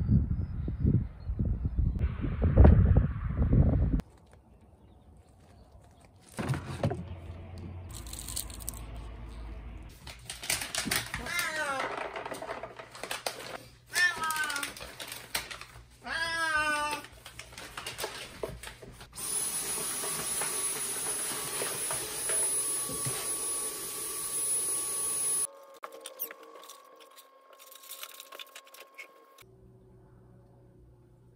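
A loud low rumble for the first few seconds, then cats meowing: about three drawn-out meows, each falling in pitch, near the middle.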